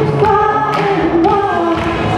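Pop song with singing over an amplified backing track, with a steady beat of about two strokes a second.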